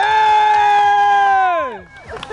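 One person's long, loud, high-pitched yell: it swoops up, holds one note for about a second and a half, then slides down and fades near the end.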